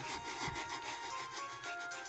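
A battery-powered toy train running along plastic track: a faint, steady grinding rasp of its motor and wheels, with soft background music under it.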